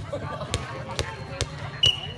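A volleyball knocking on the concrete court three times, about half a second apart, then a loud sharp smack with a brief high ring near the end.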